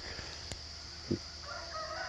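Steady high chirping of insects, with a faint, drawn-out bird call coming in near the end. There is a small click about half a second in.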